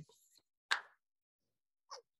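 Near silence in a pause between sentences, broken by one short soft click-like sound a little under a second in and a fainter one near the end.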